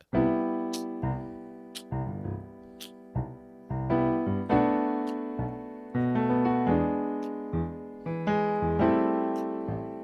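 Digital keyboard on an acoustic grand piano sound, played with both hands: a slow progression of seventh chords, each struck and left to ring, with a new chord every second or two, B minor seven among them.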